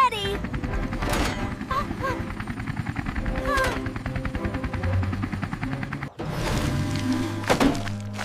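Helicopter rotor sound effect, a fast, even chop over background music, cutting off about six seconds in; a thud follows near the end.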